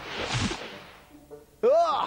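Cartoon magic sound effect: a rushing whoosh that swells to a peak about half a second in and dies away by about a second. Near the end a cartoon character's voice exclaims "Ó!"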